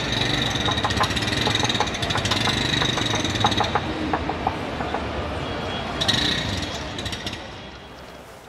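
The TVS Classic 110 scooter's rear body panel being knocked by hand: a quick run of metallic clanks in the first few seconds, then a few scattered ones, over a steady background hum. The clanking ring shows the rear body is steel rather than plastic.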